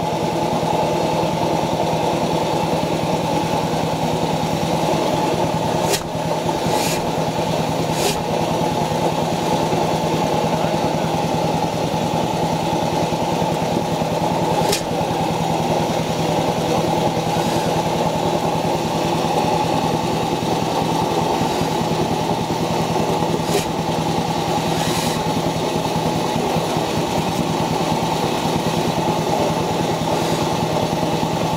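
Sandbacken stationary engine running steadily, with a few sharp ticks standing out over its sound.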